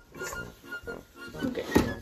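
Soft background music, with a single sharp clunk near the end from the bowl-lift lever of a KitchenAid Professional stand mixer being swung to lower the steel bowl.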